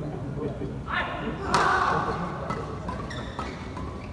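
Badminton in an echoing sports hall: a player's voice about a second in, then a loud shout about half a second long. A few sharp knocks of racket or shuttlecock follow later.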